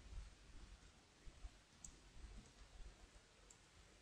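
Near silence with a few faint computer keyboard clicks over a low room hum.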